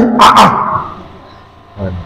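A man's loud, emphatic shout into a microphone, fading away over about a second, followed by a short pause before his speech resumes.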